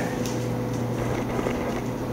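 Faint crinkling of the papery skin of an elephant garlic bulb being peeled off by hand, over a steady low hum.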